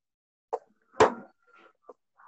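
Two short pops about half a second apart, the second louder and sharper, with faint scraps of sound between them over a video-call audio line.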